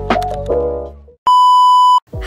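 A short stretch of intro music with a few sharp clicks fades out. About a second in, a loud, steady, high test-tone beep like the one that goes with TV colour bars sounds for under a second and cuts off abruptly.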